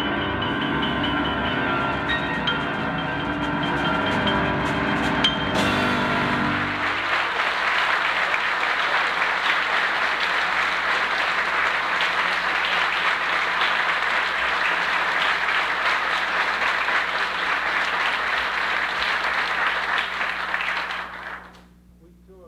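A jazz quartet with piano and drums plays the last notes of a piece. About six seconds in, an audience breaks into steady applause, which dies away near the end.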